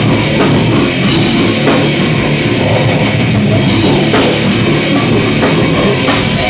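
Death metal band playing live: heavily distorted guitar and bass over a drum kit with cymbals, loud and continuous.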